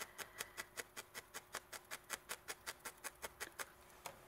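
Felting needle stabbing repeatedly into a wool felt robin, a rapid, even run of faint clicks about six a second that stops shortly before the end.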